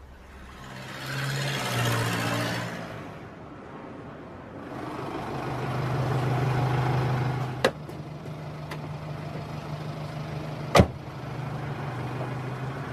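Road traffic: a vehicle passes, then an engine runs steadily close by. Two sharp clicks come about three seconds apart near the end.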